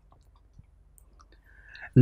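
Quiet room tone with a few faint, short clicks scattered through it.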